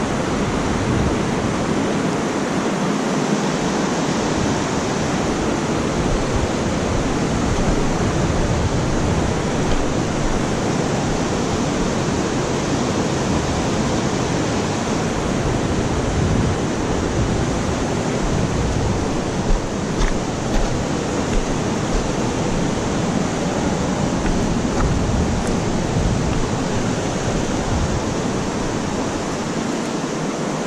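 Steady rushing of river water close by, with a few brief taps about two-thirds of the way through.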